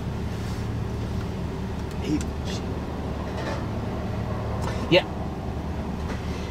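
Car engine idling at a drive-thru window: a steady low hum, with faint voices and a brief spoken word about five seconds in.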